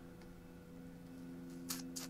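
Faint steady electrical hum in a quiet room, with two short soft clicks near the end.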